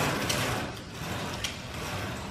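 Roller window shade being raised by its pull chain: a mechanical rattle from the chain running through the clutch, fading out within the first second, with a single click about one and a half seconds in.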